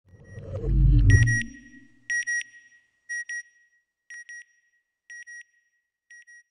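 Closing logo sound effect: a low swelling whoosh, loudest about a second in, then pairs of short, high electronic beeps about once a second, each pair fainter than the last.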